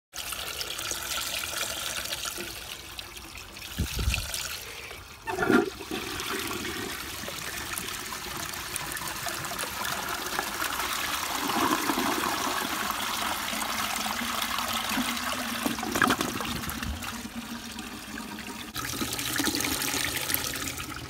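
A 1920 Vitrite Devoro toilet flushing: a couple of thumps about four and five seconds in, then rushing, swirling water as the bowl empties, and the tank refilling, with a steady low hum coming in near the end.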